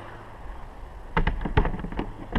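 A hollow plastic RV vent cover knocking against its metal mounting brackets as it is set down onto them, with a few sharp knocks in the second half.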